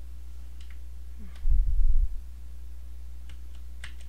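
A few faint, scattered computer mouse and keyboard clicks, with a louder low muffled thump about a second and a half in and a steady low hum underneath.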